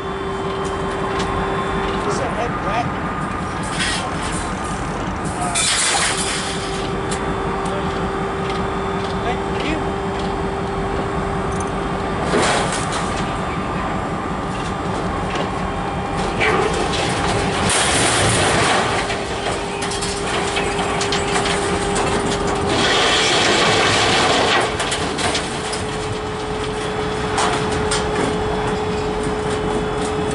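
Dump trailer's hydraulic pump whining steadily as the bed is raised to tip a load of scrap. The whine stops and restarts several times and sits a little higher in pitch near the end, over a steady running rumble, with a few louder rushes of noise along the way.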